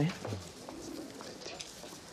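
A short, low bird call about half a second in, over faint street ambience.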